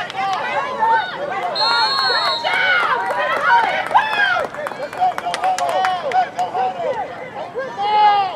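Spectators shouting and cheering, many raised voices overlapping. A referee's whistle blows once for about a second, about a second and a half in.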